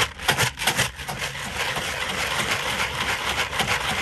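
Floating carp pellets rattling inside a lidded plastic bucket as it is lifted and shaken: irregular rattles at first, settling into a steady rushing rattle after about a second. The shaking tumbles two pellet sizes together and coats them in fish oil.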